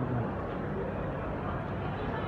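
Steady background noise of a busy airport terminal concourse: a constant low rumble and hum with no distinct events.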